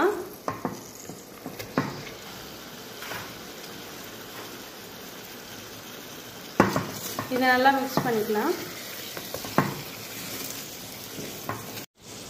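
Marinated prawns frying in a pressure-cooker pot with tomatoes and onions, sizzling steadily. A few sharp knocks of a spoon against the pot come in the first two seconds and again later as the prawns are stirred.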